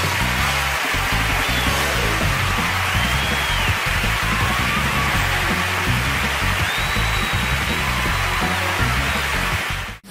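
Theatre audience applauding and cheering over the show's closing theme music, which carries a steady bass line; the sound cuts off abruptly at the very end.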